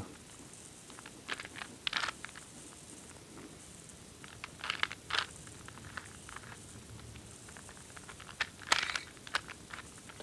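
Sporadic plastic clicks and clacks of a Megaminx puzzle's faces being twisted by hand, coming in short clusters.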